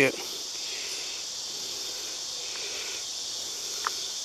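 A steady, high-pitched chorus of insects buzzing without a break, with one faint short click just before the end.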